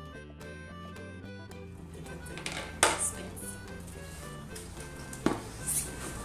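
Background music over a cardboard shipping box being handled and opened: rustling, with two sharp snaps, the loudest sounds, about three seconds in and again just after five seconds.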